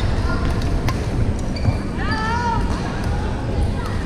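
Busy badminton hall: sharp clicks of rackets hitting shuttlecocks on the surrounding courts and court-shoe squeaks on the wooden floor, over echoing players' chatter. A pitched squeak that rises and falls comes about two seconds in.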